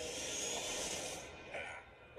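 Quiet trailer soundtrack: a faint hissing ambient wash with a low held tone, fading almost to silence near the end.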